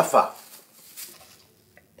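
A voice finishing a short phrase, then a pause with only faint room noise.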